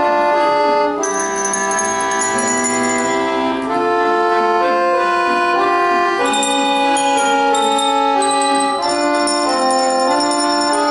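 Children's handbell ensemble playing a tune on coloured handbells, with sustained chords under the bell notes that change about once a second.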